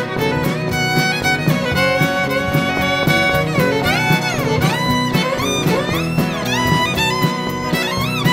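Instrumental break of a country-western song: a fiddle plays a melody with sliding notes over the band's accompaniment and a steady beat.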